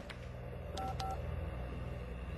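Cell phone keypad tones: two short dual-tone beeps in quick succession about a second in, as a number is dialed.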